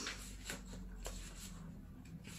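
Paperback book pages being leafed through: a few quick papery flicks and rustles.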